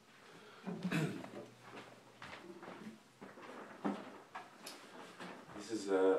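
Quiet small-room sounds: faint bits of a voice and a few soft knocks and clicks.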